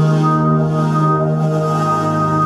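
Wide Blue Sound ORBIT synthesizer (a Kontakt instrument) sounding one held low note with a stack of steady overtones. Some of the upper overtones fade in and out as the sound shifts.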